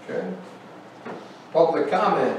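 People talking in a meeting room, words too indistinct to make out, growing louder and fuller about a second and a half in.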